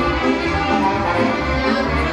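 A band playing music, a melody of held pitched notes over a recurring low bass.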